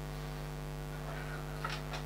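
Steady electrical mains hum, with two faint short clicks near the end.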